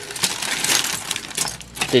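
Hard plastic model-kit parts trees clattering against each other and a clear plastic bag crinkling as the parts are handled and tipped out onto the box: a dense run of small clicks and rustles.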